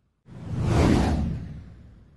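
A single whoosh sound effect that starts about a quarter second in, swells to a peak near the middle and fades slowly away.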